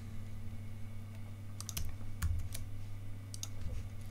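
A handful of short, sharp clicks from a computer keyboard and mouse in the middle stretch, over a low steady hum.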